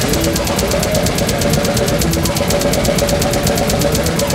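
A death metal band playing live. The drum kit keeps up rapid, evenly spaced cymbal strokes, about nine a second, over a dense, continuous low end of bass drums and distorted guitars.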